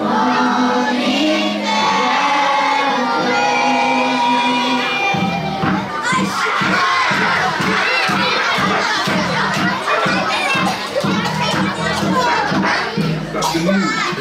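A large group of children singing in unison with a backing track, holding the final notes, which end about five seconds in. Then the children shout and cheer together while the music keeps playing underneath.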